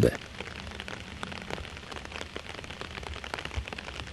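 Faint, even hiss scattered with many small light crackles and clicks, over a faint low hum.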